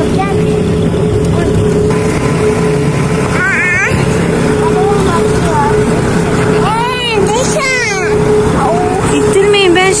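Farm tractor engine running steadily, heard from the trailer it is towing, with a constant drone throughout. Voices call out over it several times.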